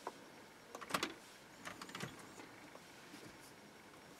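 Faint fingertip taps on a car's dashboard touchscreen: a few quick clicks about a second in and another pair around two seconds in.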